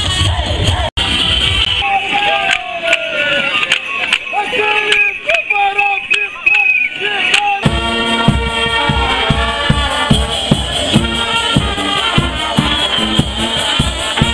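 Street-festival audio cut together from takes. Music plays for about a second, then comes a cut to a few seconds of voices. From about eight seconds in, a brass band plays with a bass drum keeping an even beat.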